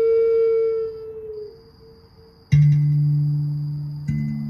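A flute holding a note that dips slightly and fades out about a second and a half in, then, after a short lull, a Rav Vast steel tongue drum struck once, its low note ringing and slowly decaying.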